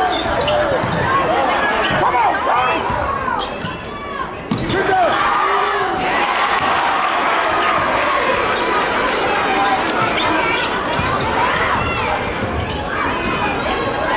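Basketball dribbled on a hardwood gym floor, with sneakers squeaking in short, bending chirps, over the steady chatter and calls of a crowd in a large hall.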